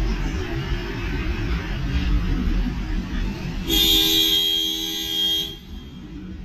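A car horn gives one steady honk of about two seconds, a little past halfway through, over low rumble and street noise.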